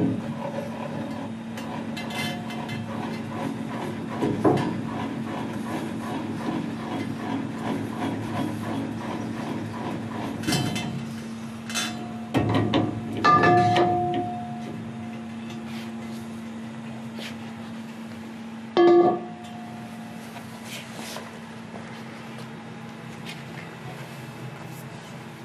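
Scattered metal knocks and clanks as a painted alloy wheel is handled on and lifted off a metal roller wheel holder. Two of the clanks ring briefly, one in the middle and one near the end, over a steady low hum.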